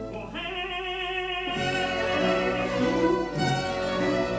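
Opera orchestra playing held notes with the bowed strings prominent. The notes change about a third of a second in and again about a second and a half in.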